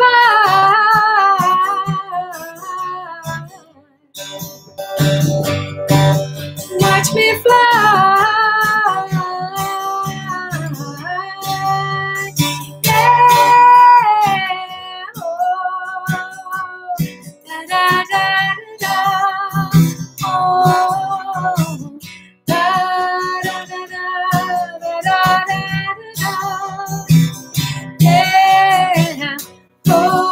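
A woman singing long held notes while strumming an acoustic guitar.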